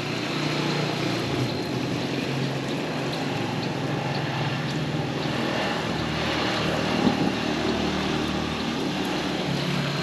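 Small motorcycle engine of a Philippine tricycle (motorcycle with sidecar) running on the road below, a steady engine drone.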